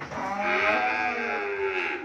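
A cow mooing: one long call of nearly two seconds that rises a little and then sinks in pitch.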